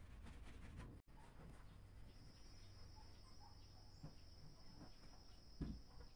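Near silence with faint rubbing and handling noise as a rag-covered hand works over a cement-and-ceramic planter, ending in a soft thump as the planter is set down on the cloth-covered table. A faint steady high tone runs from about two seconds in.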